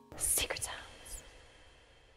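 A held keyboard-like chord cuts off right at the start. A short whispered voice follows in the outro logo sting: breathy phrases about half a second in and again near one second, with a faint high ringing tone fading after them.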